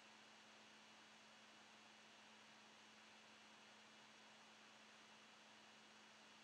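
Near silence: a faint steady hiss with a low, steady hum underneath.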